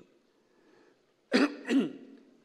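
A man clearing his throat twice in quick succession, a little over a second in, after a moment of near silence.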